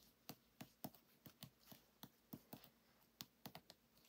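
Faint, short clicks and taps, about three or four a second, as fingers and nails press and rub a clear acrylic stamp block down onto card.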